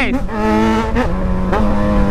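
Yamaha XJ6 motorcycle's inline-four engine running at high revs while the bike is ridden hard, with a steady note that drops slightly about a second in. Wind rumbles on the microphone.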